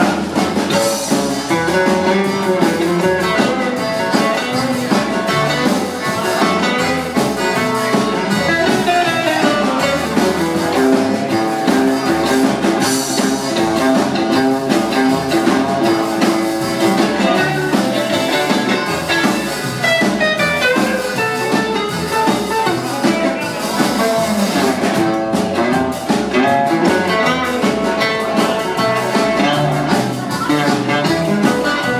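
Live band playing with no singing: guitar, accordion, upright double bass and drum kit keeping a steady dance beat.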